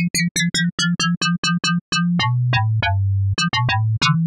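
Serum software synth playing an FM patch, a sine carrier frequency-modulated by a high-octave sine, giving metallic, bell-style tones. It is played as quick repeated notes, about five a second, and their high overtones step downward as the modulator's semitone setting is lowered. About two seconds in, the low note drops lower and is held while a few more short metallic notes sound over it.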